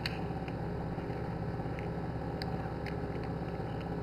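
A chicken eggshell being pried apart by hand, giving a few faint clicks over a steady low hum.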